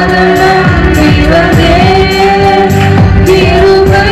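A woman singing a devotional song into a microphone, accompanied by a Yamaha electronic keyboard playing a melody and chords over a steady drum rhythm.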